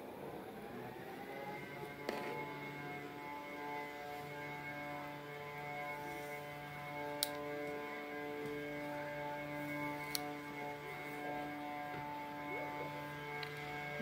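A steady drone of several held tones, like a synth pad. It swells in over the first second or two, and single notes drop out and come back. A few faint clicks sound over it.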